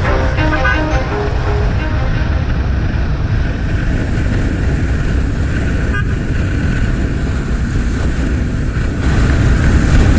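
Wind rushing over the microphone with engine and road noise from a sport motorcycle being ridden at speed, a steady low rumble. Background music fades out in the first second or two.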